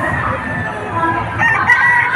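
A rooster crowing, starting a little past halfway, over the steady hubbub of a crowd.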